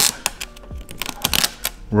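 Light, irregular clicks and crackles of thin vinyl tint film being handled and pressed onto a plastic fog light lens with the fingertips.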